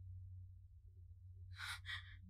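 A tearful woman breathing out in two quick, breathy sighs near the end, over a low steady hum.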